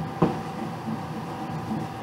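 Room air conditioner running with a steady hum, and a single short knock about a quarter second in.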